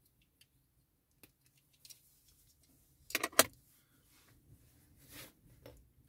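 Small plastic toy-robot kit parts clicking as they are handled and pressed together: faint ticks, then a quick run of loud clicks about three seconds in, and a couple of softer clicks near the end.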